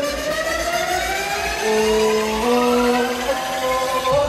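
Electronic dance music build-up played over a club sound system: synth sweeps rise steadily in pitch over held synth notes that step up twice, with little bass. Heavy bass and kick drum come back in right at the end as the track drops.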